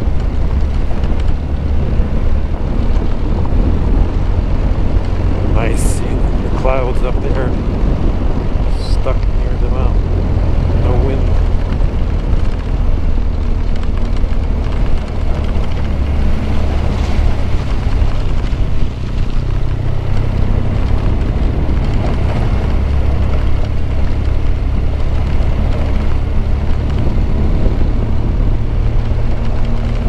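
BMW R1200GS flat-twin engine running steadily under way on a gravel road, a low, even engine note with wind noise on the microphone and tyres on loose dirt.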